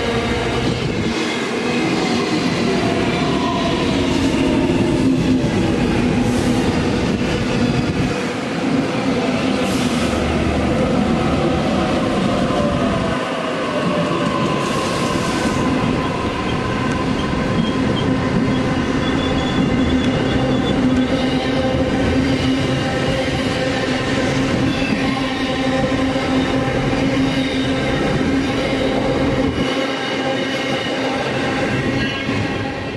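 A long container freight train running past, a steady mix of rumble and pitched tones from the wagons' wheels on the rails. Later a Sydney Trains double-deck electric passenger train stands at the platform, with short hisses of air at times.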